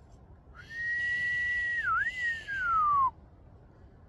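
A man whistling in admiration: one long high note that holds steady, dips once briefly, then slides slowly down in pitch before stopping.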